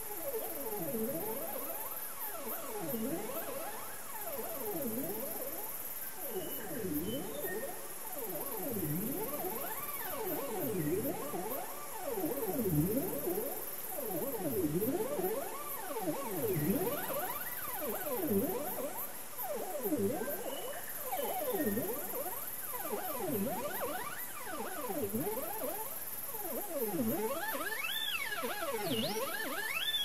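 Ambient electronic music: overlapping gliding synth tones that dip and then rise in pitch, roughly one a second, over a steady high hiss. Near the end the glides climb higher.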